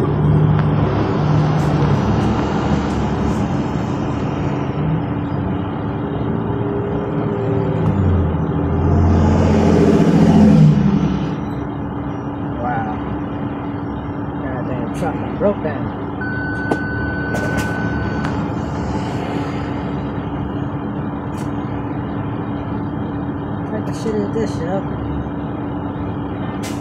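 The diesel engine of a new 2022 Freightliner tractor running and pulling through traffic, heard from inside the cab with road noise. The engine swells louder with a brief hiss about nine to eleven seconds in. A steady electronic beep lasts about two seconds a little past midway, with a few sharp clicks.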